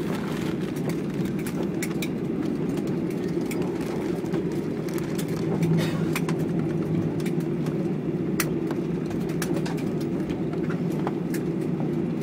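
Airliner cabin noise: a steady low rumble as the jet rolls on the ground, with scattered light clicks and rattles.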